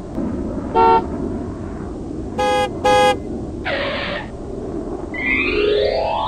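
Cartoon-style car horn toots: one short honk about a second in, then two quick honks close together, over a steady low rumble. A brief hiss follows, and near the end a rising whistle-like glide begins.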